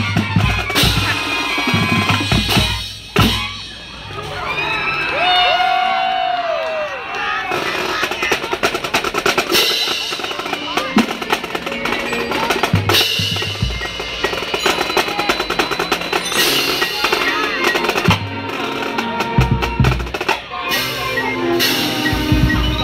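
Marching band music with the drumline to the fore: snare rolls, rimshots and bass drum hits. About three seconds in it drops briefly into a softer passage with a few held, bending tones, then the full band comes back.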